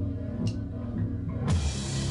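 A rock band playing live: slow, sparse low notes with a single sharp drum or cymbal stroke. About one and a half seconds in, the whole band suddenly comes in louder and fuller.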